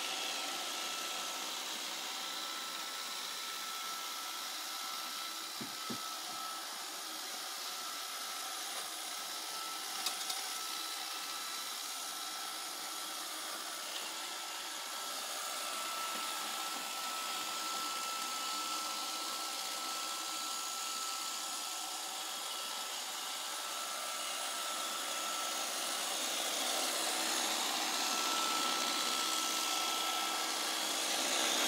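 iRobot Roomba 530 robot vacuum running across a hard wooden floor: a steady whirring hiss with a thin high whine, growing a little louder near the end as it comes closer. A few light knocks come about six and ten seconds in.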